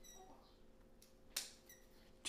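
A single sharp snip of scissors cutting a white forsythia (Miseon tree) stem, about one and a half seconds in, over near silence. There is a faint short ringing tone at the very start.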